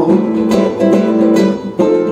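Nylon-string classical guitar played solo: strummed and plucked chords, with a short break near the end before the next stroke.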